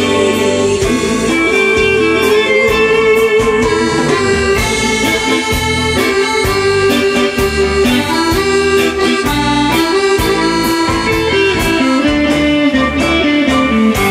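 Instrumental section of a pop backing track played over a stage sound system, with a sustained lead melody over a steady beat; the song is coming to its end.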